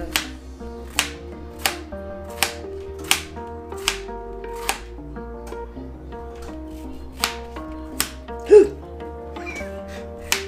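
Background music with a steady bass line, over sharp knife strokes through yellow squash onto a plastic cutting board, about one every three-quarters of a second, pausing in the middle and resuming twice near the end. A louder short thump comes about eight and a half seconds in.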